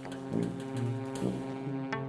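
Free-jazz quartet of tenor saxophone, tuba, cello and drums playing live: a sustained low note, with shorter low notes moving beneath it and scattered drum and cymbal strikes.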